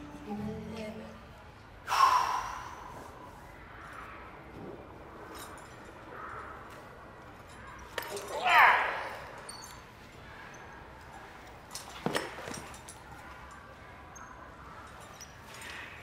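Acrobats' voices during hand-to-hand training: breaths and short vocal sounds, with a sharp exclamation about two seconds in and a louder, rising cry about eight and a half seconds in. A sharp knock comes about twelve seconds in.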